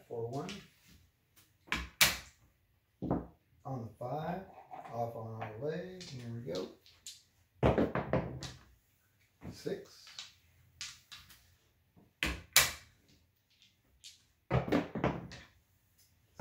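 Sharp clacks on a felt craps table as clay chips and the plastic ON/OFF puck are set down, loudest about 2 s and 12 s in, between stretches of low, indistinct talk.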